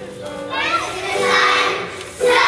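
A group of young children start singing together in unison about half a second in, over accompanying music.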